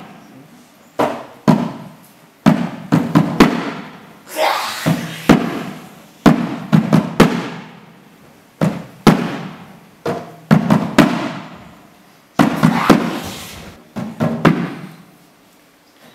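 Staged storm sound effect: loud, thunder-like bangs and crashes come one every second or so, some in quick clusters of two or three, and each trails off slowly.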